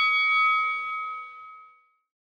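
A bell-like tone ringing out at the close of a music jingle and fading away to silence near the end.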